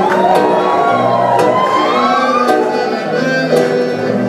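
Live acoustic folk dance music: accordion and acoustic guitars playing together, with sharp percussive ticks on the beat. Over it, a high sliding wail rises and falls for the first two and a half seconds.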